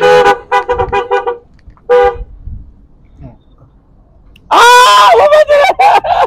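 A man laughing loudly: a quick run of short bursts at the start, one more about two seconds in, then a longer, louder laugh near the end.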